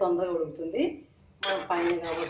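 A metal spoon strikes the side of an aluminium cooking pot of curry with a sharp clink about one and a half seconds in.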